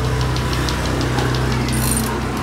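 A motor running steadily with a low, even hum, with faint regular ticking over it and a brief high hiss near the end.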